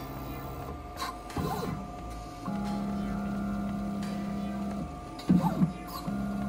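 CNC milling machine's axis drive motors moving a touch probe through an automatic hole-centering probe cycle. A steady whine runs for about two seconds in the middle as the table travels, and short louder sounds come near the start and near the end.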